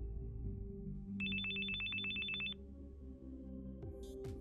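Telephone ringing: one burst of rapid electronic trill, about a second and a half long, starting about a second in.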